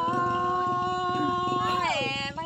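A woman's voice holding one long sung note in a Tai-language call-and-response folk song, steady in pitch, then sliding down near the end.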